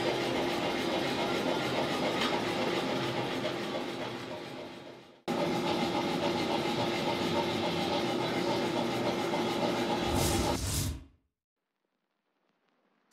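Gas forge burner running: a steady roar and hiss with a low hum underneath. It fades out about five seconds in, starts again abruptly, and cuts off near the end after a brief low surge.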